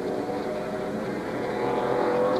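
NASCAR Winston Cup stock cars' V8 engines running at speed on a road course, several engine notes droning together, growing slightly louder near the end.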